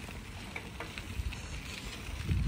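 A cruiser bicycle being ridden on pavement: a low, steady rolling noise of the tyres, with wind on the microphone and a few faint clicks.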